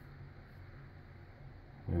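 Quiet room tone with a low, steady hum; a man starts to speak near the end.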